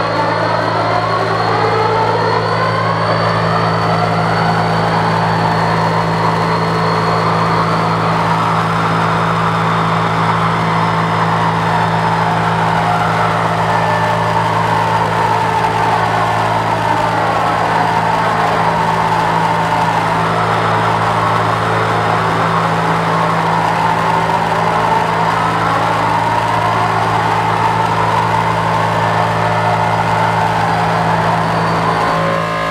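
Live electronic drone: a steady low hum under layered tones that slowly sweep up and down over several seconds, with a thin high tone that shifts pitch about eight seconds in.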